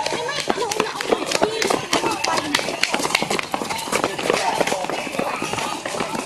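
A group of young people's voices shouting and calling out while they run, with many quick footfalls and knocks mixed in.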